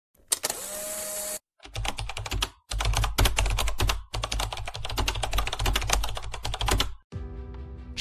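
Glitchy VHS-style intro sound effects. About a second of static hiss with a steady tone comes first. Rapid, dense clicking over a low rumble follows in three runs broken by short gaps, ending in a brief held electronic chord.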